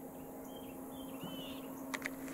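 Distant construction machinery running with a steady low hum, with a few short bird chirps over it and a faint click near the end.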